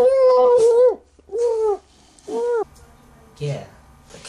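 A person's muffled, pitched 'mm' cries through a mouth taped shut: a long one about a second long, then two short ones rising and falling in pitch. Near the end a quieter low hum takes over.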